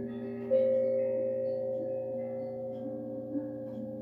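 Meditation music of overlapping sustained, ringing bell-like tones; a higher note comes in about half a second in and rings on, slowly fading.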